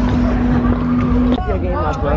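A steady low rumble on the microphone under people talking outdoors. A single steady held tone sounds through the first second and a half, then cuts off suddenly, and voices follow.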